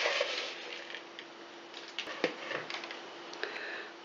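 Chocolate streusel crumbs being tipped from a plastic mixing bowl and scattered by hand onto a cake in a springform pan. A short, louder rustle at the start is followed by fainter crumbly rustling and a few light clicks and taps.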